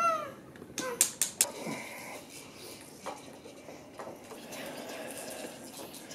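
A baby squealing and babbling in short high calls that bend up and down. Three sharp clacks come about a second in, followed by a quieter stretch.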